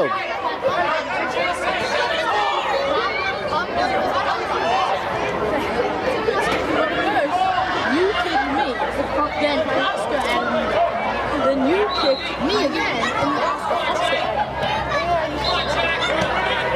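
Many overlapping voices of spectators and players chattering, with no single clear speaker.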